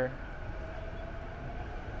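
Steady city street background noise, with a faint steady hum sounding for about a second in the middle.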